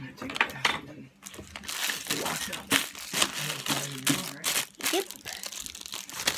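Clear plastic packaging bag crinkling as it is handled and pulled open, a dense run of crackles starting about a second in.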